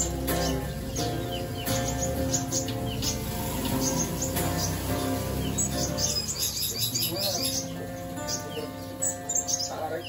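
Acoustic guitar-led music playing, with songbirds chirping repeatedly over it. The low part of the music drops away about two-thirds of the way through, leaving the guitar and the birds.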